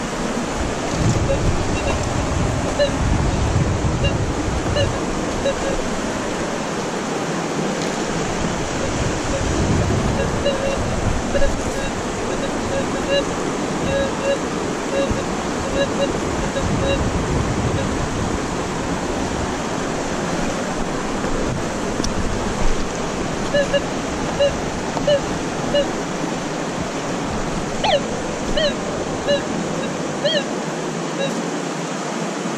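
A river rushing steadily, with short high pips recurring through it and a quick falling call near the end.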